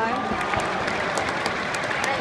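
Football stadium crowd clapping and shouting, a dense patter of many hands. A single sustained shout trails off just after the start.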